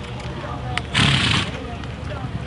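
Background voices of people talking outdoors, with one short louder burst about a second in.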